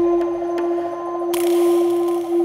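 Background music for a tense scene: a steady held drone, with a hissing swell coming in about one and a half seconds in.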